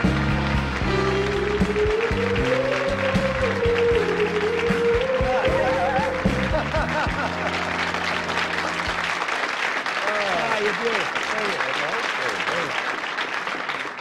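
Studio audience applauding over music with a steady bass line. The music stops about nine seconds in, and the clapping carries on under people laughing and talking.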